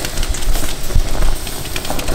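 Stainless steel stovetop kettle at a full boil, steam rushing out of its open spout in a steady noisy hiss; the whistle cap is flipped up, so there is no whistle.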